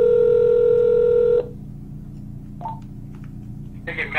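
Telephone ringback tone over a phone line: one steady ring tone about two seconds long that cuts off sharply about one and a half seconds in, followed by a quiet line.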